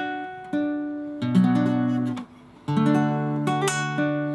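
Acoustic guitar fingerpicked chords, D, A and B minor, each plucked and left to ring, about six attacks with a brief break a little past the middle.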